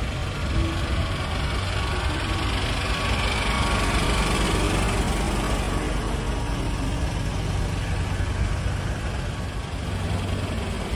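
Heavy truck's diesel engine idling, a steady low running sound with no change in pace.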